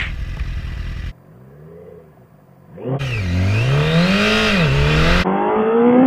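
Honda Fireblade sportbike's inline-four engine accelerating hard from a standstill: after a quieter stretch, the revs climb steeply about three seconds in, drop at an upshift and climb again.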